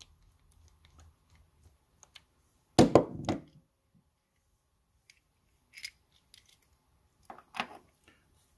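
A zinc-alloy combination cam lock being taken apart by hand on a wooden tabletop while its steel cam is removed: faint small metal clicks and scrapes, with one loud short knock about three seconds in and a few light ticks near the end.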